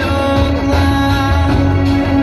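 Music: an instrumental passage of a song, held pitched notes over a steady low bass, with no voice.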